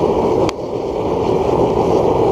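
Homemade forced-air waste oil burner firing hard on used motor oil: a steady, loud rushing noise of blower air and flame. One sharp click about half a second in.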